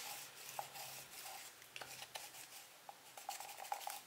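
Focusing helicoid of a Leica Hektor lens being turned by hand, giving a faint light rubbing with scattered small ticks. The focus runs quietly.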